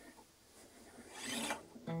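A faint rasping rub swells over about a second and then fades. Just before the end, an acoustic guitar starts playing.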